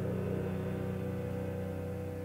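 The song's closing chord on piano with low bowed strings, held and slowly fading away.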